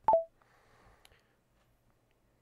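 A short electronic beep of two notes stepping down in pitch: the voice assistant's cue that the hotkey has ended voice recording. A faint click follows about a second in.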